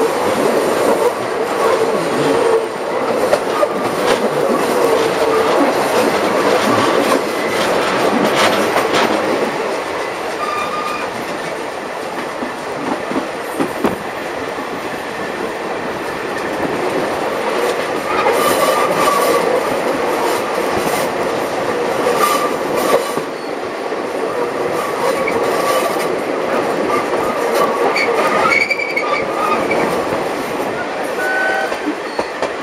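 Wooden passenger carriages of a steam-hauled train rolling along the track on a curve: a steady run of wheel clicks and rattle, with brief squeals from the wheels coming and going.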